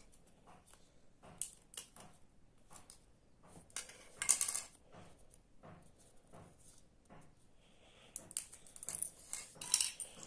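Handling of small plastic Lego pieces: scattered light clicks and taps as parts are fitted to a Lego model engine block, with a louder rustle about four seconds in and a quick run of clicks near the end.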